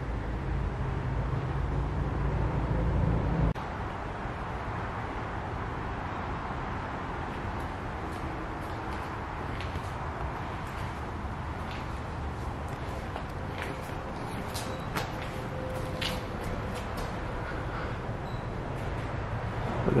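Background ambience without speech: a steady low hum that cuts off suddenly about three and a half seconds in, then an even background hiss with a few faint clicks.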